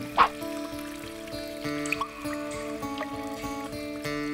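Instrumental title theme music with sustained held chords, opening with a brief loud burst.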